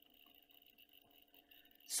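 Near silence with a faint steady hum, and a voice beginning right at the very end.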